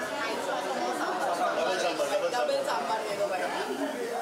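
Conversation: several voices talking over one another, a woman's voice among them, indistinct chatter around a table.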